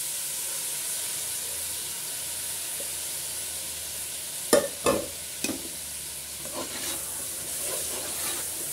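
Washed rice and masoor dal sizzling steadily as they hit hot oil in an aluminium pressure cooker: the water still on the grains is frying off. From about halfway through, a steel ladle knocks against the pot a few times as the rice is stirred.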